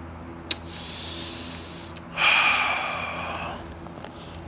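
A man's breathing close to the microphone: a sharp click about half a second in, a softer breath, then a louder, longer breath from about two seconds in that fades away.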